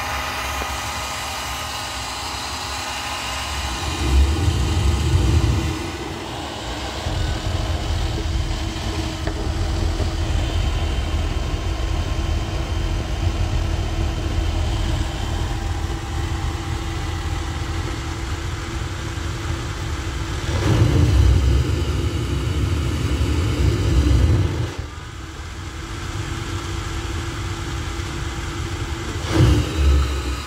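Small centrifugal blower fan running at full speed: a steady rushing of air with a whine of several steady tones. Its outlet is held against a sealed airflow test chamber to build static pressure. A louder low rushing comes twice, about four seconds in and again for a few seconds past twenty, with a short loud peak near the end.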